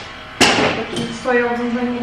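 A single sharp knock about half a second in, with a short ringing tail, followed by a woman's voice holding one long steady note.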